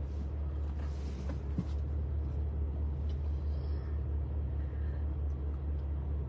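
Steady low rumble of a car's engine heard inside the cabin, with a faint click about one and a half seconds in.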